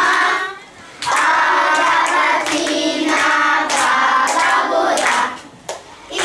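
A class of children singing a short song together with hand clapping. The song breaks off briefly just under a second in and again near the end.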